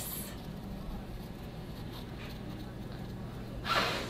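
Quiet room tone with a faint low steady hum, and a short breathy rush near the end.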